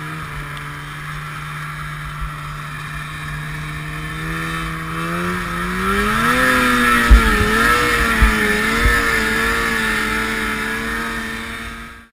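Snowmobile engine running at a steady speed, then rising in pitch about halfway through and wavering up and down as the throttle is worked, with a few dull thumps; it fades out at the very end.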